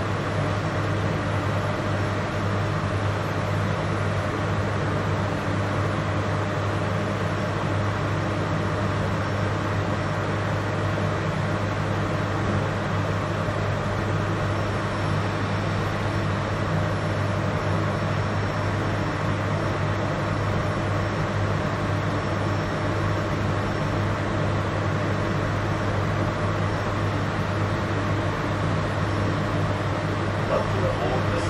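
AM class electric multiple unit's onboard equipment running, heard inside the passenger car as a steady low hum with an even whirring noise while the train powers up for service.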